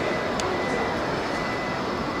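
Steady background noise of an indoor display hall: an even hiss and rumble with a faint constant high tone, and a light click about half a second in.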